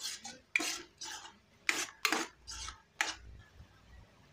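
A metal spoon stirs and scrapes a thick cashew masala paste around a nonstick frying pan. It makes about eight quick scraping strokes in the first three seconds, then stops near the end.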